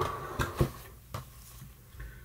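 Things being handled and rummaged in a cardboard box: low rustling with a few light knocks, two close together about half a second in and another a little after a second.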